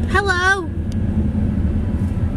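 Steady low rumble of a car heard from inside the cabin. A short high voiced sound from a child comes in the first half-second.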